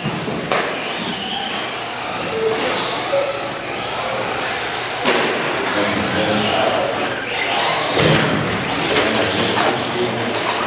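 Several Traxxas Slash electric RC short-course trucks racing. Their motors and gears whine in overlapping pitches that rise and fall as the drivers throttle up and brake.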